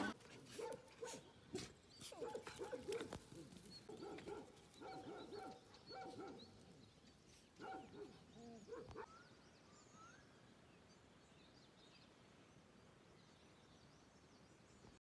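Several dogs giving many short whines and yelps that rise and fall in pitch, one after another, fading out about nine seconds in.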